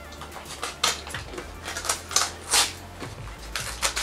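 Small scissors snipping and crinkling through a package's wrapping, a handful of short, sharp, irregular cuts.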